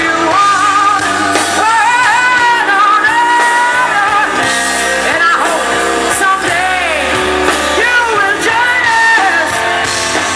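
Live rock band: a woman singing lead into a microphone over electric guitar and drums.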